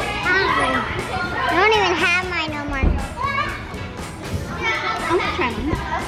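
Many children's voices chattering, calling out and squealing over one another, with a single dull thud a little before the three-second mark.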